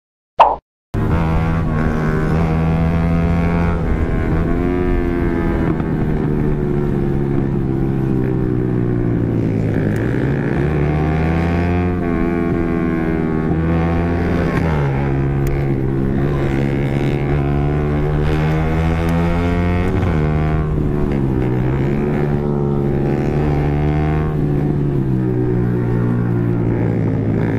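Yamaha R15 sport bike's single-cylinder engine running hard at high revs. Its pitch climbs steadily under throttle and drops suddenly several times at gear changes. A brief loud click and a half-second dropout come just after the start.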